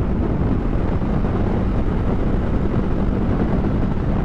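Dominar 400 motorcycle being ridden at a steady pace: a constant engine drone under heavy wind rush on the rider's microphone.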